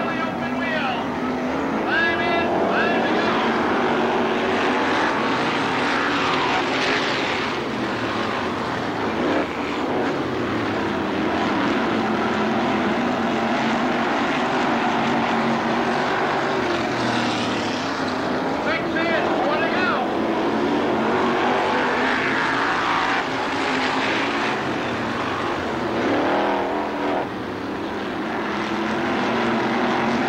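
Dirt-track modified race cars' V8 engines running hard at racing speed, the pitch rising and falling over and over as cars pass by on the oval.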